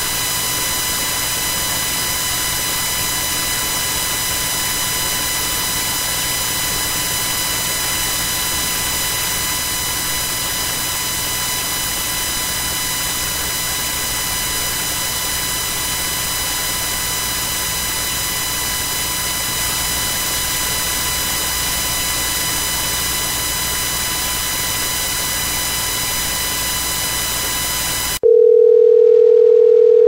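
Telephone conference line noise: a steady hiss with a buzz. Near the end it gives way to a loud, steady beep of about two seconds as the call connects.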